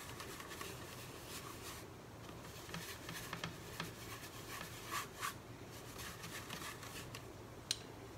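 Large bristle blending brush scratching and swishing across a canvas in irregular strokes, spreading heavy-bodied acrylic paint. A couple of louder strokes come about five seconds in.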